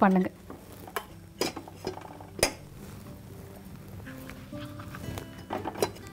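A few sharp metallic knocks and clinks against a stainless steel pot on a gas stove, then a spoon stirring and clinking in the steel bowl near the end, over soft background music.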